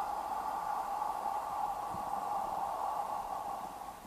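A long, slow exhale through the mouth, a steady breathy hiss that thins out and fades near the end, made during a qigong breathing exercise.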